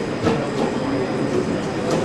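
Chef's knife chopping seasoning peppers on a plastic cutting board: a few scattered knife strikes against the board over steady background noise.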